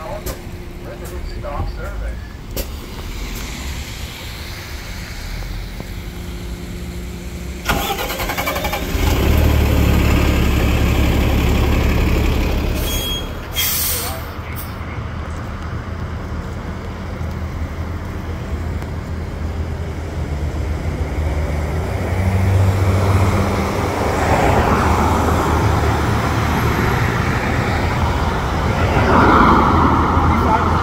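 City transit bus engines and road traffic. A bus engine runs close by and suddenly gets much louder about eight seconds in for several seconds. After a short break, traffic and engine sound build up again toward the end.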